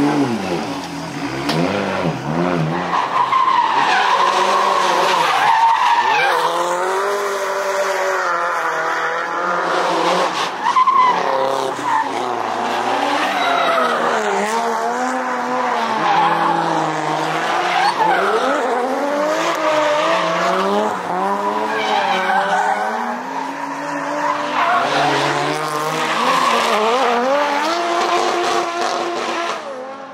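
Drift cars sliding through a corner, engines revving up and down over and over as the throttle is worked, with tyres skidding and squealing under the slide.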